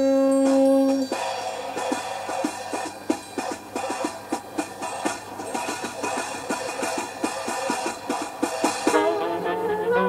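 Jazz recording: a held horn note cuts off about a second in, followed by a rapid, uneven run of percussive strikes. Near the end, several horns come in together, played at once by one player.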